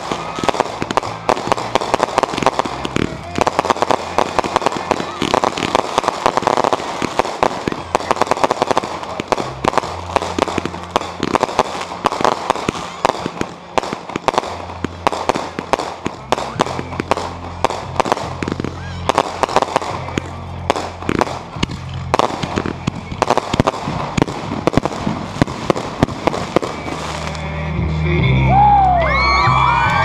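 Consumer aerial fireworks firing in rapid succession, a dense run of pops, bangs and crackling bursts, with music playing underneath. The firing stops near the end and people whoop and cheer.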